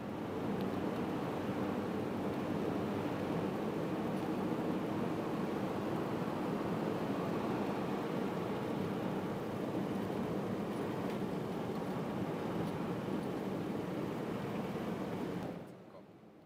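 Steady road and engine noise heard inside a car driving on a snow- and slush-covered highway. It starts abruptly and drops away shortly before the end.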